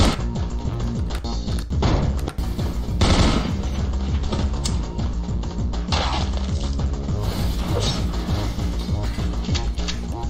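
Animated action-cartoon soundtrack: loud background music with a heavy bass line, overlaid by repeated gunshot sound effects.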